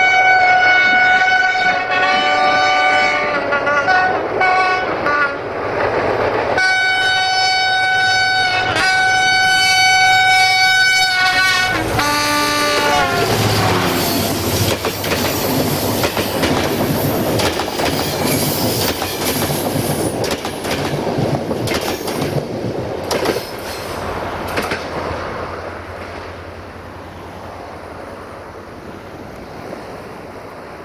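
Diesel locomotive horn sounding two long multi-tone blasts, the second falling in pitch at its end about twelve seconds in. The passenger train then rolls past close by, its wheels clattering over the rail joints and fading toward the end.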